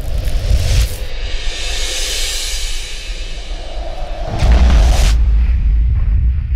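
Cinematic intro sting for a logo reveal: a deep boom, a long whoosh, then a second heavy boom hit about four and a half seconds in, set to music.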